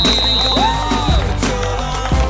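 Hip hop backing track with a steady drum beat and deep bass, a high synth note held for about a second and a sliding tone in the middle, with no rapping in this stretch.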